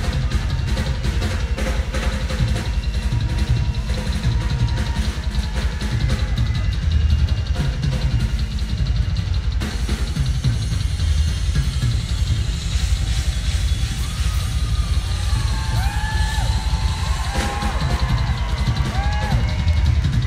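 Live rock drum solo on a full kit: fast rolls of bass drum, toms and snare, played loud and without a break.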